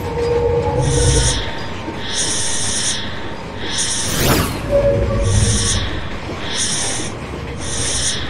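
Electronic background music with a regular beat, a high pulse about every second with low thumps beneath. A whoosh sweep comes about four seconds in.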